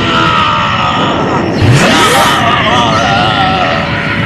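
A person's voice making drawn-out, wavering cries rather than words, with a quick upward sweep in pitch a little before the middle.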